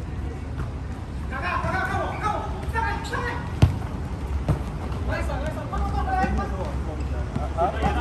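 A single sharp kick of a football, about three and a half seconds in, amid players' shouts on the pitch.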